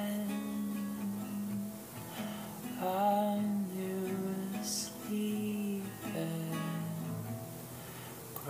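Acoustic guitar being strummed, its chords changing about once a second.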